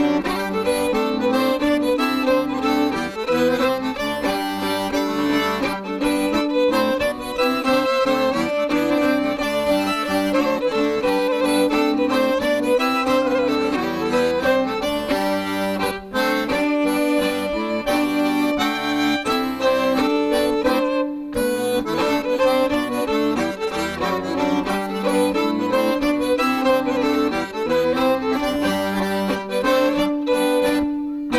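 Fiddle and melodeon (diatonic button accordion) playing an instrumental folk tune together, over a sustained low note from the melodeon.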